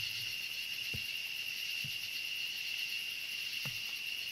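Steady, high-pitched chorus of night insects such as crickets, running unbroken, with a few faint low thumps.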